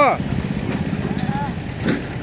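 A small engine running steadily with an even low throb.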